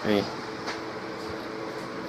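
A brief spoken "okay", then a steady background hum, with a single soft click about two-thirds of a second in.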